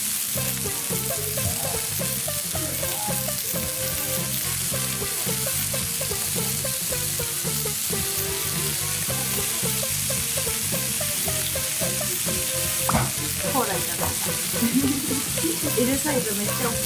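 Beef steak sizzling on a hot black iron serving plate: a steady hiss of frying fat and meat juices.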